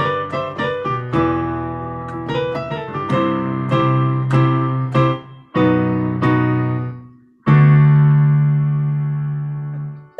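Electric piano playing a chord progression of G, E minor, C, B and D, broken by two short pauses. It ends on a long held chord that slowly fades.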